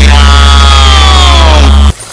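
Loud electronic music: a heavy sustained bass note under a set of synth tones that slide slowly downward in pitch, all cutting off suddenly near the end.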